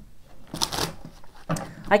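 Tarot deck being handled and shuffled, a brief papery rustle of cards about half a second in.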